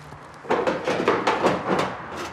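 Plastic sheeting crinkling and rustling as it is pulled back off a stack of copper plates, starting about half a second in as a dense, irregular crackle.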